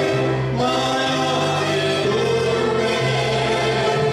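Gospel music: a choir singing with instrumental accompaniment, the bass notes changing about once a second under sustained chords.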